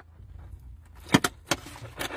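Low steady rumble inside a car cabin, with three sharp clicks a little past the middle.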